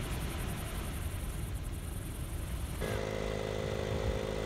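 Sea waves washing onto a rocky shore, heard as a steady rushing. About three seconds in, this cuts abruptly to the steady mechanical hum of a portable tyre air compressor running beside an idling 4WD, pumping the tyres back up for highway driving.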